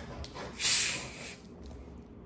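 Hiss of carbonation escaping as the cap of a plastic Sprite bottle is twisted open: one loud, high hiss of about a second, beginning about half a second in.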